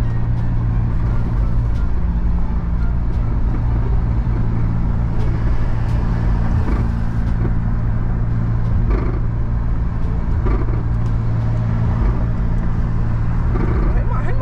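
Steady low engine and road rumble heard inside a car's cabin, with a few faint rustles over it.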